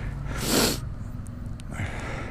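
A person's sharp breath out close to the microphone, once, about half a second in, over a steady low rumble.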